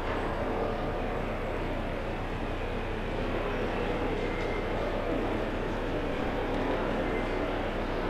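Steady rushing background noise with a low, constant hum underneath and no distinct events.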